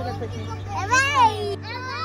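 Young children's voices at play, with one high-pitched squeal that rises and falls about a second in.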